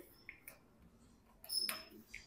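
Mostly quiet, with a small faint tick early on. Near the end comes a brief light metallic clink and rattle from a folding hex-key multi-tool being worked on and pulled off a bicycle brake-lever clamp bolt.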